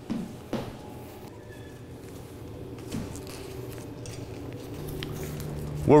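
Quiet handling sounds as a silk diffusion cover is fitted onto a metal flag frame: cloth rustling with a few soft taps, one about a tenth of a second in, one about half a second in and one about three seconds in.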